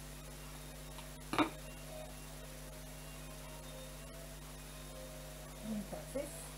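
Steady low electrical hum of room tone, with one brief sharp tap or clink about a second and a half in, and a faint small handling sound near the end.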